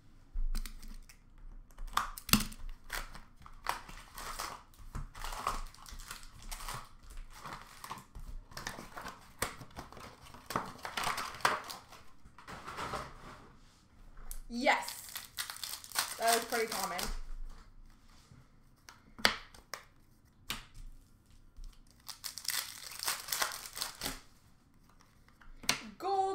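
Plastic trading-card pack wrappers being torn open and crinkled in repeated bursts, as packs are opened and their cards handled.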